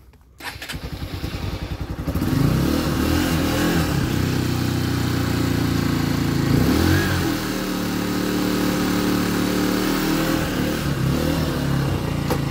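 Honda XR150's single-cylinder four-stroke engine cranking on the electric starter, catching about two seconds in, then running cold on choke with a brief rev after it fires and another midway. The carbureted engine is cold-blooded.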